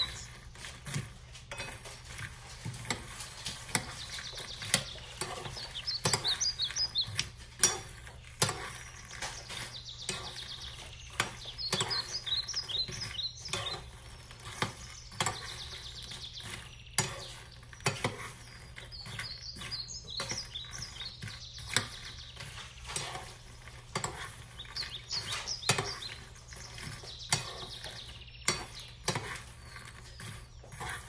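A metal spoon stirs and scrapes puffed lotus seeds (phool makhana) around a small nonstick pan as they roast, giving irregular clicks and light rattling.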